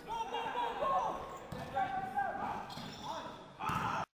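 A basketball bouncing on a hardwood sports-hall floor during play, with people's voices calling across the hall.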